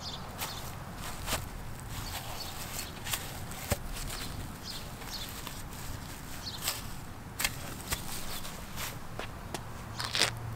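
Footsteps on grass: irregular rustling, crunching steps over faint outdoor ambience.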